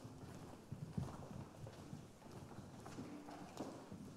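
Footsteps and light knocks on a wooden stage floor, with shuffling and faint murmuring, as performers move into place.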